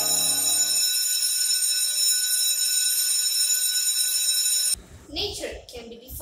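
Steady high electronic tone made of many fixed pitches at once, a synthesised title sound effect, over the tail of a low bell-like tone that dies away about a second in. The tone cuts off suddenly a little before the end, and a girl starts speaking.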